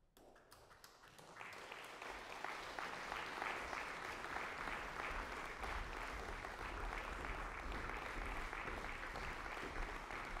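Audience applauding in a large concert hall. It begins with a few scattered claps and fills out into steady applause within about two seconds.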